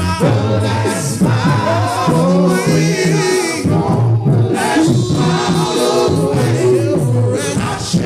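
Gospel choir singing a cappella, several voices together and continuous throughout.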